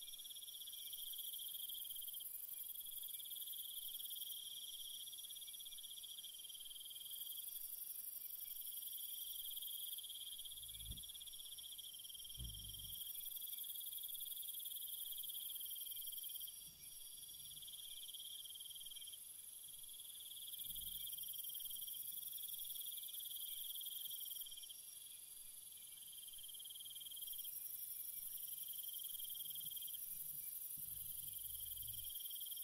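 Faint, steady high-pitched trilling of insects, its level shifting every few seconds, with a few faint low thumps.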